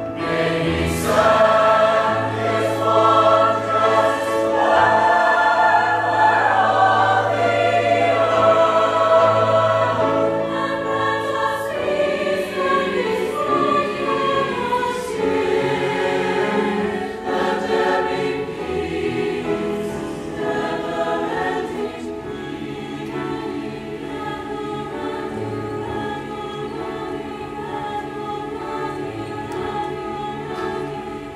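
A large high school concert choir singing a choral piece in many voices. It is loud through the first part and grows softer from about two-thirds of the way in.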